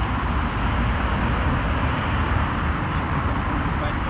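Steady outdoor background noise, a low rumble with indistinct voices of a group of people.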